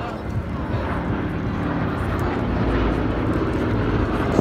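Boeing B-17 Flying Fortress flying past low with its four Wright R-1820 Cyclone radial engines running in a steady deep drone. It grows gradually louder as the bomber comes nearer.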